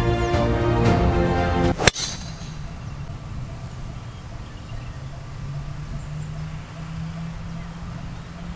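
Background music that cuts off about two seconds in at the single sharp crack of a driver striking a golf ball off the tee, with a brief high ring after the impact. Then quiet outdoor background with a faint steady low hum.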